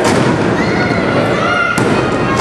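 A wrestler slammed onto the ring: a loud thud of body on canvas and boards at the start. Near the end comes a single sharp slap, which fits the referee's hand hitting the mat to start the pin count. Crowd shouting runs underneath.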